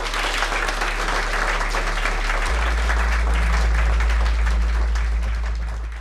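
Audience applauding steadily, a dense patter of many hands clapping, with a steady low hum underneath.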